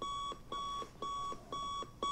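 Sony bedside alarm clock going off: identical short electronic beeps of one steady pitch, evenly spaced at about two a second.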